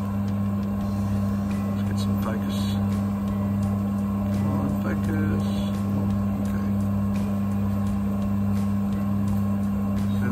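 Small coffee sample roaster's electric motor and fan running with a steady, even hum while the just-finished roast sits in its metal bowl.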